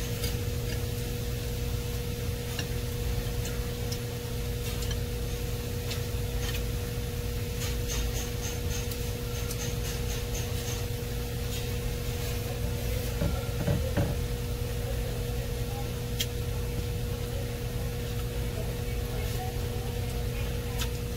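Someone eating noodles with chopsticks from a ceramic plate: scattered light clicks of the chopsticks on the plate and chewing, over a steady low electrical hum.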